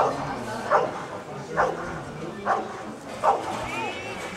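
Rottweiler barking repeatedly at the helper with the bite sleeve, guarding him in the hold-and-bark: five sharp barks a little under a second apart.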